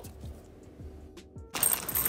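Quiet background music with a soft low beat. About one and a half seconds in, a dense dry rattle starts: semi-sweet chocolate chips poured from a bag into a glass bowl.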